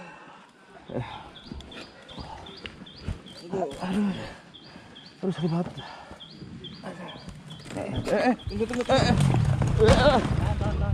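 A man groaning and crying out in pain after a dirt bike crash, in short strained bursts that grow louder and more frequent near the end.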